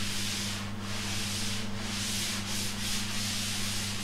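Cloth duster wiped back and forth across a chalkboard, erasing chalk writing: a run of repeated rubbing strokes.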